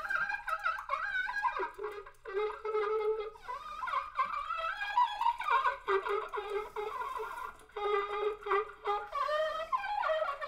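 Unaccompanied trumpet playing a line of wavering, sliding notes, with short breaks about two seconds in and near eight seconds.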